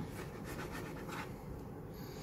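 Faint handling noise: fingers rubbing and scraping lightly over a phone in its leather-backed case, a few soft scratchy strokes in the first second or so.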